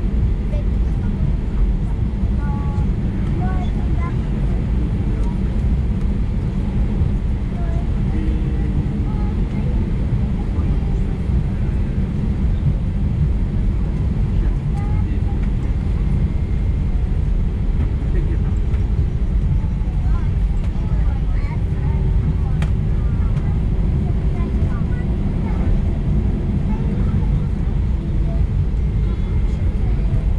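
Steady low rumble in the cabin of an Airbus A320-214 taxiing after landing: its CFM56-5B engines at idle and the wheels rolling over the taxiway.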